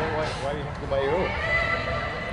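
High-pitched voices shouting and calling out across an indoor soccer pitch, with a long drawn-out call starting about one and a half seconds in.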